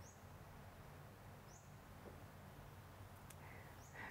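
Near silence: room tone with a faint low hum and three very faint, short, high rising chirps.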